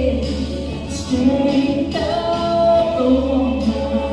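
A woman singing a slow song into a microphone, holding long notes that change about once a second, over instrumental accompaniment played through the hall's sound system.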